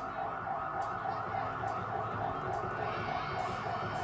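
A siren warbling quickly, its pitch rising and falling about three times a second, stopping near the end as music begins.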